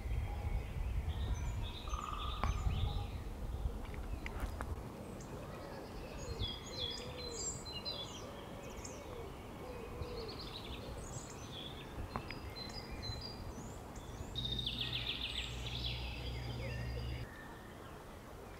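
Small songbirds calling in woodland: many short, high chirps and quick trills, with a run of low, hoot-like calls in the middle. A low rumble underlies the start and returns near the end, where it stops abruptly.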